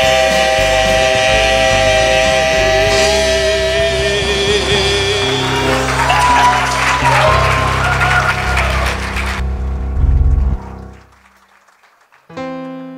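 Men's gospel quartet holding the final notes of a song over country-style guitar accompaniment; the voices stop about five seconds in while the instrumental ending plays on under scattered applause, and the music cuts out about ten and a half seconds in.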